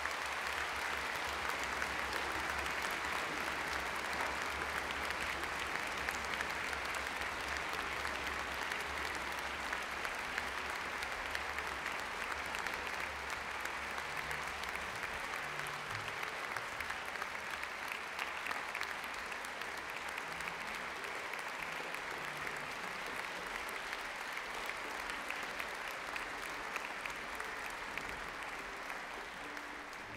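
A concert audience applauding steadily for a soloist, easing off a little toward the end.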